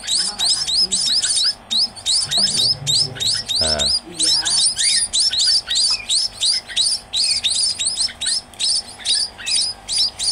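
Young munia chicks calling from the hand: a rapid, steady run of short high chirps, about five or six a second, with a couple of brief pauses.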